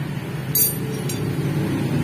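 A metal tool gives a sharp clink about half a second in and a fainter click about a second in, over a steady low engine hum.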